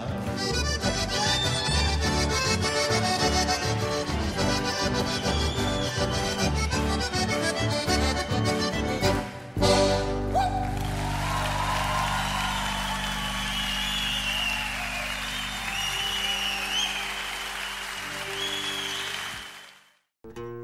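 Live band music led by an accordion, with guitar, upright bass and drums, playing a brisk rhythmic song. About halfway through the song ends on a held final chord under audience applause and cheering, which fade out at the very end.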